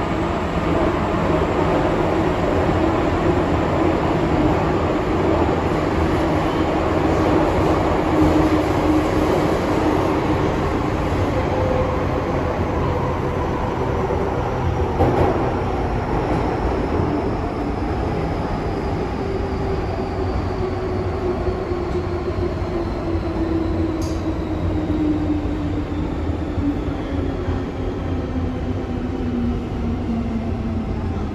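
Inside an MTR M-train subway car running in tunnel: steady wheel and track rumble with traction motor whine. Over the last third the whine falls steadily in pitch as the train slows into a station, with a brief sharp click partway through the slowdown.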